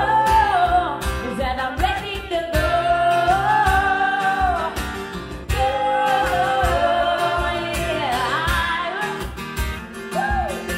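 Live acoustic pop band: women's voices holding long sung notes without clear words, over acoustic guitar and a steady cajon beat.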